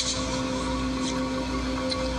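A steady, held drone note with a fainter octave above it, over a low rumble and hiss; a brief click right at the start.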